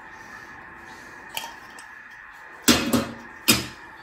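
Metal canning-jar lids being set down on a metal tin: a faint click, then two sharp clacks a little under a second apart near the end, each with a short ring.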